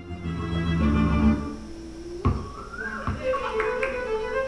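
Live string ensemble of double bass and two violins playing. Low bass notes come first, then a violin line with vibrato enters about two seconds in, together with a single sharp knock.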